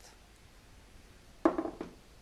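Quiet room, then a single sudden knock of metal cookware being set down about one and a half seconds in, ringing briefly as it fades.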